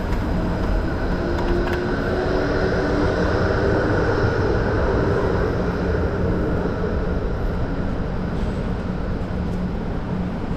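City street traffic: cars and a van driving past on a wet road, with tyre hiss, and a tram's motor humming for a couple of seconds early on.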